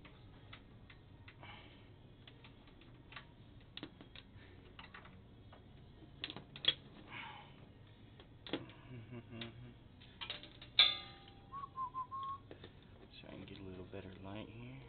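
Hex head bolt being threaded back into a pinsetter's pin deflector by hand: scattered light metal clicks and clinks, with one sharp ringing clink about eleven seconds in. Right after it comes a brief wavering whistle.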